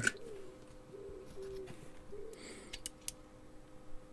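Quiet hand soldering on a circuit board: a few light clicks from handling the board and iron near the end, over a faint steady hum, with three short low tones in the first half.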